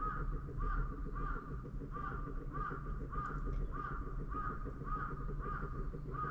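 A bird calling over and over at a steady pace, about two short rising-and-falling calls a second, over a low steady background hum.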